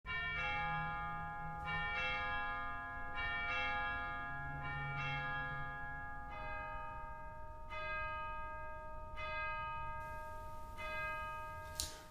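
Bells ringing a slow sequence of about a dozen strikes, each note ringing on and fading. The strikes come in close pairs at first, then singly about every second and a half.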